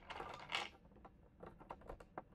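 Small plastic pieces clicking and rattling against a peg bar as they are fitted and shifted by hand, with a quick run of light clicks near the end.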